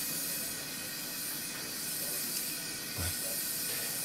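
Smoke evacuator drawing air through its nozzle held next to the skin: a steady hiss, with a soft bump about three seconds in.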